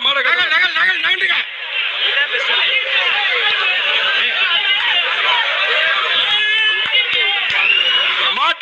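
Large crowd of men shouting and calling all at once, many voices overlapping; the mix changes abruptly about a second and a half in.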